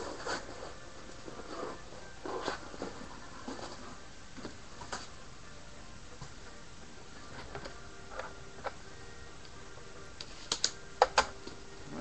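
Trading-card box and its plastic-wrapped packs being handled and opened: scattered light taps, rustles and clicks, with a few sharper clicks near the end.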